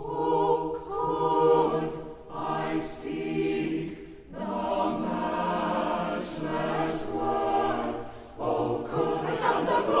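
Mixed SATB choir singing a hymn a cappella in four-part harmony, beginning right at the start, in phrases broken by short pauses for breath about two, four and eight seconds in.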